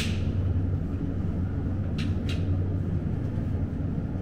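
Steady low hum and rumble of a supermarket's refrigerated display cases, with two light clicks about two seconds in.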